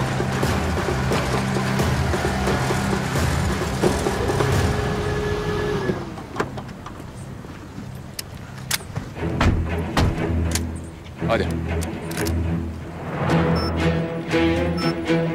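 A Ford pickup truck's engine runs and then winds down and stops about six seconds in. After that, sharp knocks and clicks follow: doors and rifles being handled. Dramatic background music plays throughout.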